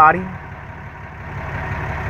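A 6.7-liter Cummins diesel idling with a steady low hum, heard from under the rear of the truck.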